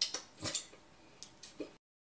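A few faint, short clicks and small mouth noises close to a microphone, followed by a brief cut to dead silence shortly before the end.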